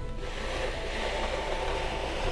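Sanitaire SC210A manual push sweeper rolled across a cloth-covered table, its wheels and spinning brushes giving a steady rolling rustle, with soft music underneath.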